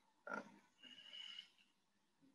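Near silence: room tone, with a short faint sound about a third of a second in and a fainter, higher one around a second in.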